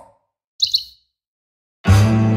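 A brief high two-note bird chirp sound effect about half a second in, followed by silence; cartoon theme music starts just before the end.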